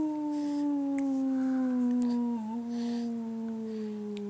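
A single long, howl-like 'ooo' call: one held note sliding slowly down in pitch, with a brief waver about halfway through.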